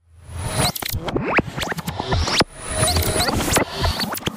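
Sound effects for an animated title card: a fast jumble of swishes, squeaky pitch glides and clicks over a low hum, rising in swells that break off abruptly.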